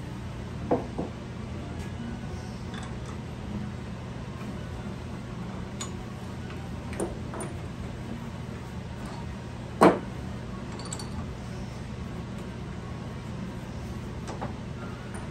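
Steady low shop hum with a few light clicks and knocks of tools being handled at a stopped wood lathe. One sharper knock comes about ten seconds in.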